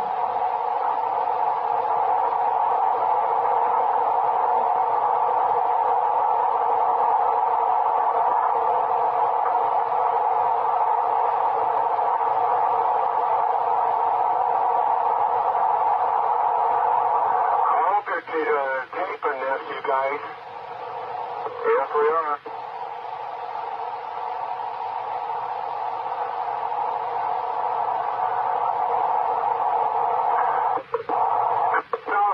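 Police radio static from an old recording of radio traffic: a steady hiss in a narrow middle band. About eighteen seconds in, the hiss breaks for a few seconds of garbled, unintelligible transmission, then returns a little quieter.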